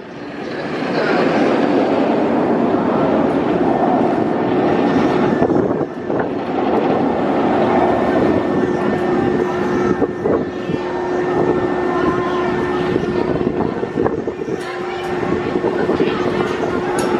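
Bolliger & Mabillard stand-up roller coaster train running along its steel track: a loud, continuous rumble of wheels on rail, with a steady hum running underneath it.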